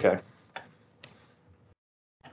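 A man says "okay", then two faint, light clicks about half a second apart at a computer as the slides are brought up.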